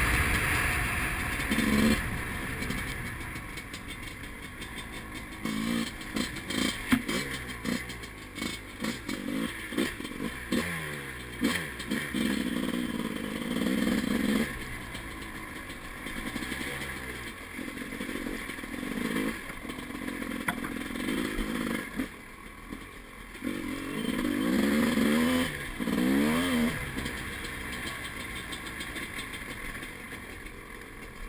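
Dirt bike engine revving up and dropping back again and again as it is ridden along a rough trail, with the bike clattering over bumps. A loud rushing noise opens it, fading within the first two seconds.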